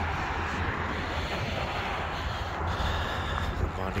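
Steady vehicle noise: a continuous low engine rumble under a broad wash of traffic sound, with no distinct event.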